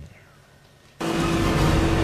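After a moment of near silence, a motorboat running at speed cuts in suddenly about a second in: a steady engine hum under loud rushing wind and water noise.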